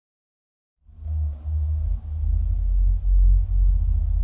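After about a second of silence, a deep rumbling drone of an intro soundtrack sets in. It swells and dips a few times in loudness.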